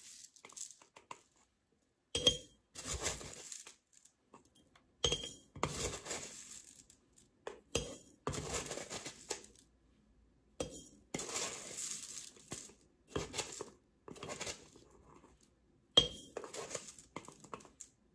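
Metal teaspoon scooping dried minced onion flakes from a plastic container and tipping them into a glass mason jar. The spoon clinks with a short ring on the jar several times, between stretches of dry rustling and scraping of the flakes.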